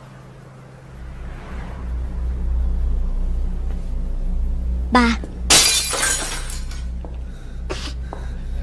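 Dark film score swelling in as a low drone about a second in. A loud crash of shattering glass breaks in about five and a half seconds in, with a shorter crash near the end.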